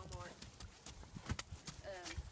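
A run of sharp hoof beats from a Tennessee Walking Horse moving at a trot.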